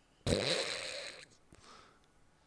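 A person blowing out a forceful breath close to the microphone, a sudden puff of about a second, followed by a softer short breath.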